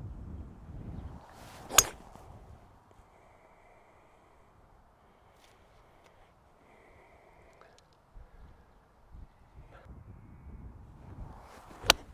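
Two golf shots with Stix clubs, each a single sharp crack of the clubhead striking the ball: a 5 wood off the tee about two seconds in, then a 5 iron from the fairway near the end. A faint low rumble lies under the quiet stretch between them.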